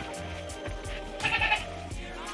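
Background music with a steady beat, and a goat bleating once, briefly, a little past the middle.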